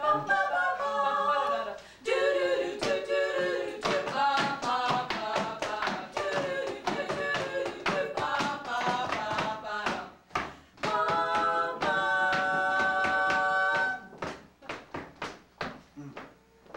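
Three a cappella voices singing an original score for the dance, with sharp hand claps in rhythm throughout. Near the end the voices hold one long chord and then stop, leaving only a run of claps.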